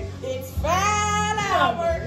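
A high voice sings one long held note over music with a steady bass line. The note bends up and then falls away.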